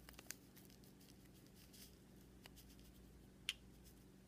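Near silence, with a few faint clicks and taps as small plastic toy parts and a candy packet are handled; one sharper click comes near the end.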